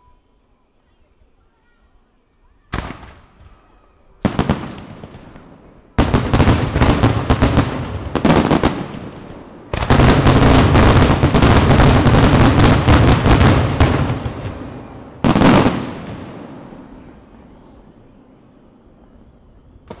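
Daytime fireworks display. After a quiet start come two single shell bursts, then a rapid run of bangs and crackling that builds into a dense, unbroken barrage of explosions for about five seconds. A last loud bang follows, and its echo slowly dies away.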